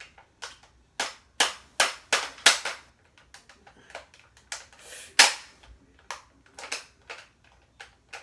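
Hard plastic clicks and snaps of a Bop It Extreme toy being handled and worked by hand, its spinner broken. The sharp clicks come in an irregular run, the loudest a little past five seconds in.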